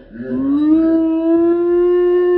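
A man's voice imitating a boiling kettle's whistle: one long, loud, high wail that rises at the start and then holds a steady pitch.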